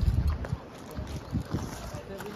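Wind buffeting the microphone in low, irregular rumbling gusts, strongest in the first half second.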